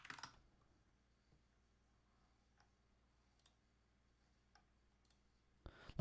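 Near silence, with a short burst of computer-keyboard typing clicks at the start and a few faint, scattered clicks after it.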